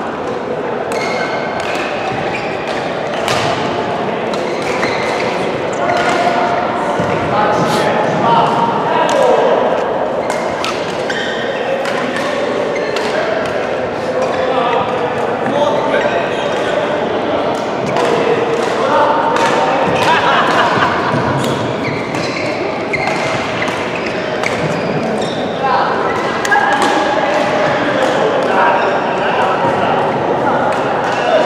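Badminton rackets hitting shuttlecocks: many short, sharp strikes from rallies on several courts, ringing in a large sports hall, over steady voices chatting.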